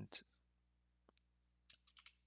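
A few faint, sparse clicks of typing on a computer keyboard.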